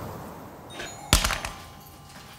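A single loud thump a little over a second in, dying away within about half a second, with a few lighter knocks just before it.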